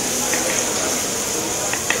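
Diced mango with butter, brown sugar and cinnamon sizzling in a very hot pan as a steady hiss, with a couple of light clicks of the spatula against the pan near the end.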